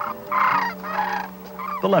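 Sandhill cranes calling, two loud honking calls in the first second or so, over steady held background tones.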